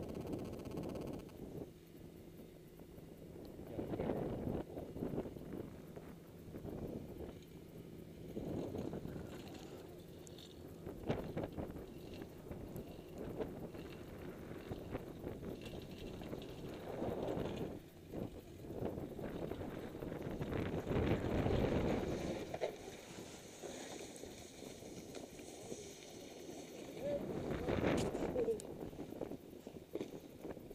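Wind on the camera microphone and a snowboard sliding and scraping over snow, the noise rising and falling in swells every few seconds.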